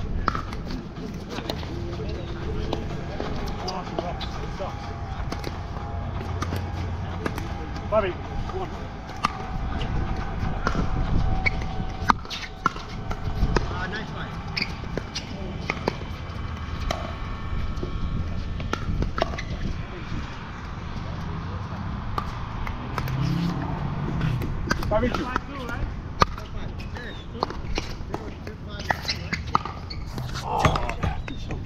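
Pickleball paddles striking the plastic ball during a doubles rally: sharp pops at irregular intervals, mixed with ball bounces on the hard court, over a low rumble of wind on the microphone.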